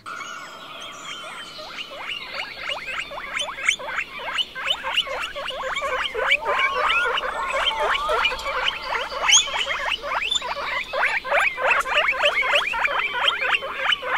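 Guinea pigs squeaking: a dense run of short, high squeaks that grows louder over the first few seconds, with a couple of longer gliding calls near the middle.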